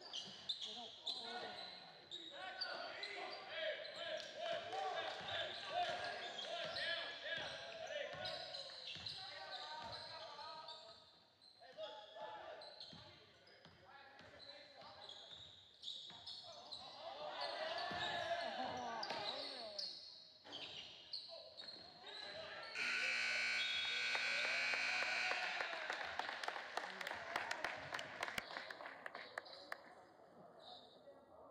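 Basketball game in a gym: a ball dribbling and the crowd shouting and cheering as play runs down. About 23 s in, the scoreboard horn sounds one steady blast of about three seconds, marking the end of the third period, and the crowd cheers on after it.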